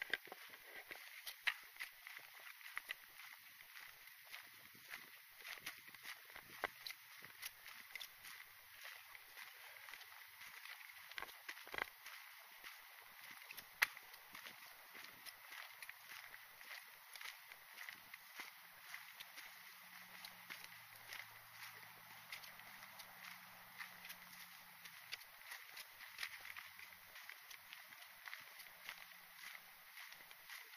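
Footsteps on a dry dirt trail strewn with dead leaves, faint, irregular light crunches and ticks from a steady walking pace, over a faint steady high tone.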